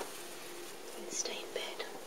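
A person whispering softly in a few short breathy bursts, over a steady faint electrical hum.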